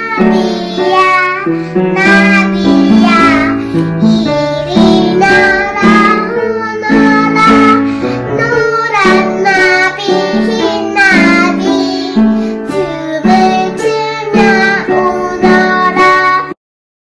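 A child singing a song to plucked acoustic guitar accompaniment.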